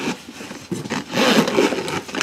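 Leather camera case being handled and its zippered lid pulled open: a scraping, rubbing rasp of zipper and leather, louder over the second half.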